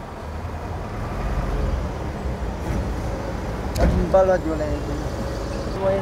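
Low rumble of a passing road vehicle, swelling over the first two seconds and then easing off. A voice is heard faintly in the background near the end.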